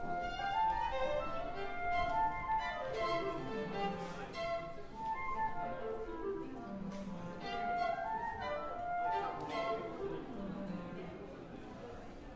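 Orchestral instruments, violins among them, played by musicians warming up on their own rather than together as an orchestra; a falling run of notes comes about four times, and voices chatter faintly underneath.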